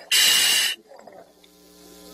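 A diver's scuba regulator hissing loudly as a breath is drawn through it, picked up by the microphone inside his full-face mask, for about two-thirds of a second before it cuts off sharply. A faint hum follows.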